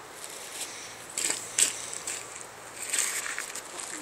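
A few short splashes and knocks among stones in shallow river water, the loudest about one and a half seconds in, over the steady rush of the river.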